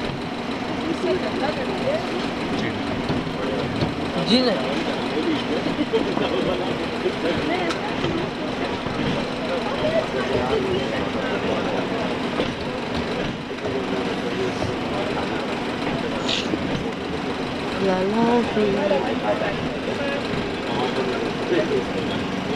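Inside a passenger train coach rolling slowly through a station: a steady low engine hum, with people's voices chattering over it throughout and louder about three-quarters of the way through.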